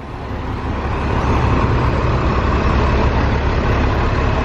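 Large coach bus running close by: a steady low engine rumble with road noise, building over the first second and then holding.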